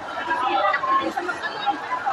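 Women talking together in lively conversation.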